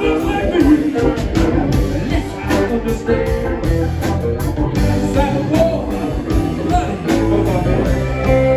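Live rock band playing: electric guitars over a steady drum beat.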